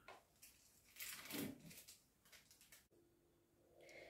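Near silence, with one brief soft scrape about a second in: a knife cutting through a shortcrust cake topped with baked meringue.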